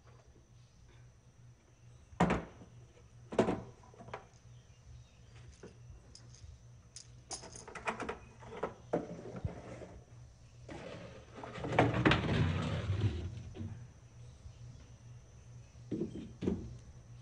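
Objects being handled in a closet: a box knocked twice in the first few seconds, then light clicks and taps, and about eleven seconds in a louder rustling scrape lasting a couple of seconds, over a faint steady hum.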